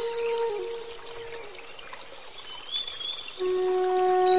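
Slow meditative flute music: a held note fades away in the first second and a half, and after a quieter gap a new low held note comes in about three and a half seconds in.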